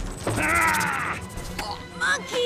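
A harsh, drawn-out vocal cry lasting about a second, from a cartoon fight, over orchestral film score, with a shorter vocal sound near the end.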